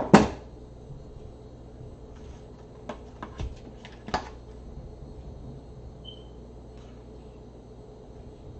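Quiet handling of craft materials with a hot glue gun in use: a few light clicks and knocks about three to four seconds in, and a brief faint high squeak a couple of seconds later.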